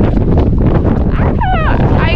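Strong wind buffeting the microphone on an exposed summit, a loud steady rumble. About a second and a half in, a brief high falling vocal sound from a person.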